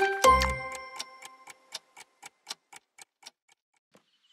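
A children's song ends on a final chord, followed by a clock ticking about four times a second that fades away over the next few seconds.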